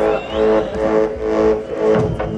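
Live rock band starting a song: a low droning chord pulsing about twice a second.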